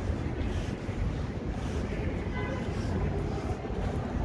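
Wind buffeting the microphone, a steady low rumble over the outdoor city background.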